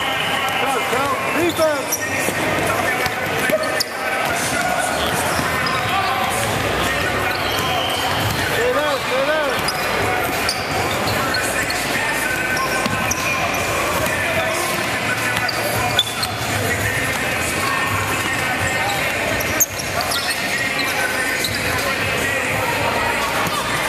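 Indoor pickup basketball: a ball bouncing on a hardwood gym floor and players' voices echoing in the hall, with a few brief squeaks and two sharper knocks in the second half.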